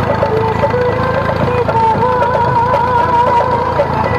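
A song with a wavering melody line plays over the steady running of a Massey Ferguson 135 tractor engine.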